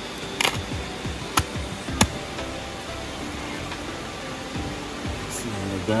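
Background music with steady held notes, with three sharp knocks in the first two seconds as a large serrated knife chops through a whole raw chicken on a river rock.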